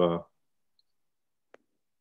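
A man's hesitant 'uh' trails off into near silence, broken by one faint, short click about a second and a half in.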